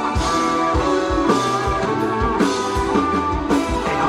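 Live rock band playing an instrumental passage without vocals: electric guitars holding sustained notes over bass and a drum kit striking hits every half second or so.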